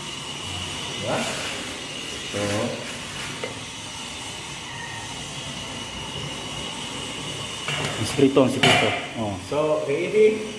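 Steady hiss of a portable gas stove burning under an aluminium pot of simmering chicken soup. Voices talk briefly a couple of times and again near the end.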